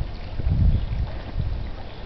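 Wind buffeting the camera microphone: an uneven low rumble that swells and drops in gusts, over a faint hiss.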